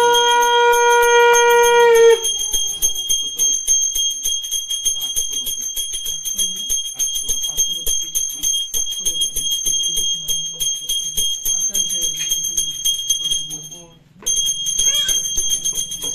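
Brass hand bell (puja ghanta) rung continuously in rapid strokes during an arati. A conch shell is blown in one steady note for about the first two seconds. The ringing breaks off for a moment near the end.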